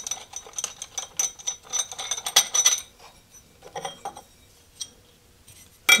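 Quick run of light metallic clinks and rattles as hand tools and metal parts are handled on a mill spindle, thinning to a few clicks about four seconds in.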